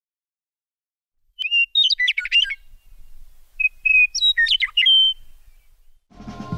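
A songbird singing two short phrases about two seconds apart, each a clear whistled note running into a quick jumble of notes.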